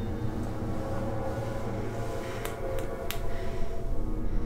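Metal surgical instruments clinking on a tray as a hand picks among them: three sharp clicks in the second half, over a low steady drone.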